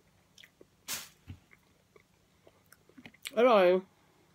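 A person chewing soft, moist dried persimmon (hoshigaki), with small wet mouth clicks and a short hiss about a second in. A single word is spoken near the end.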